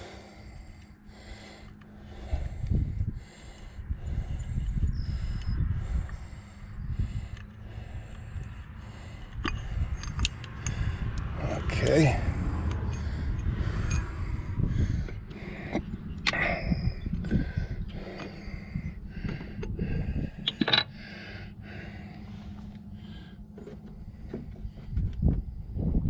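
Irregular metal clicks and knocks from a socket wrench, bolts and parts as a tractor's PTO stub shaft is unbolted and pulled out of its housing, over a low rumble.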